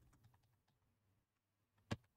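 Faint keystrokes on a computer keyboard as digits are typed, with one sharper key click near the end.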